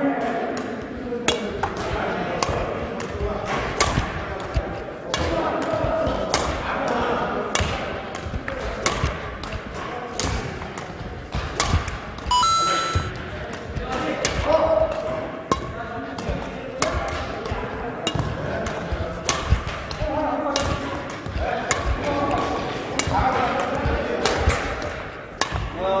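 Badminton rackets striking shuttlecocks over and over in a fast net-push drill: a sharp crack roughly every second. Voices carry through the hall underneath.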